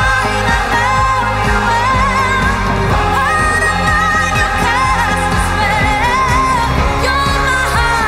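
Pop song: a woman sings long held notes that waver with vibrato over a full band backing with a steady beat.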